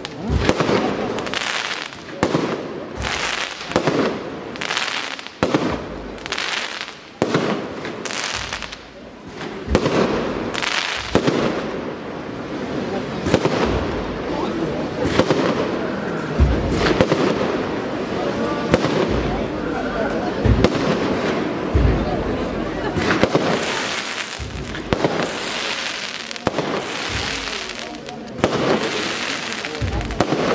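Firecrackers going off in rapid runs of sharp bangs and crackles, with a crowd's voices underneath.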